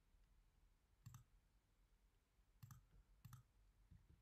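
Three faint computer mouse clicks, about a second in and twice near the end, against near silence.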